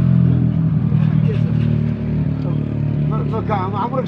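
A steady low engine hum, unchanging throughout, with a man's voice coming in near the end.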